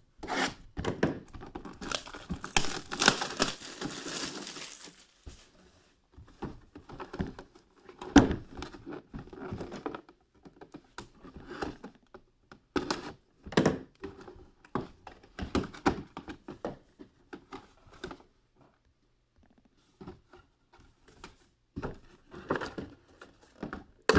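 A knife slitting the plastic shrink-wrap on a cardboard box and the wrap tearing and crinkling away, loudest in the first few seconds. Then scattered knocks and short rustles as the cardboard boxes are cut open and handled.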